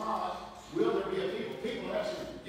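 A man's voice speaking to an audience, sermon-style talk.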